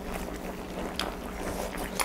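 Steady low background hum with a faint click about a second in.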